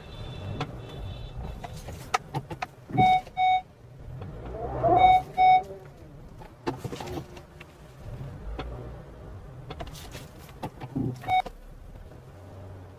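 Honda Amaze petrol's engine pulling up an incline, heard from inside the cabin as a low steady hum with road noise and a few light knocks. A car horn beeps over it: a quick double beep about three seconds in, another about five seconds in, and a single beep near the end.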